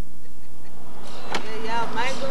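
Steady low hum of a blank videotape transfer, broken about a second in by a sharp click as the camcorder footage starts. A brief high-pitched voice follows near the end.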